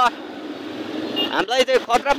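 Street traffic and engine noise heard from a slowly moving motorbike, between bursts of a man's voice, with a brief high tone about a second in.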